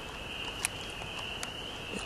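Chorus of spring peepers: many overlapping high-pitched peeps merging into one steady ringing drone, with a couple of faint clicks.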